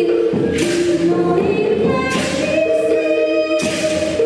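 Live band music: several voices singing long held notes together, with a percussion strike about every second and a half, three in all.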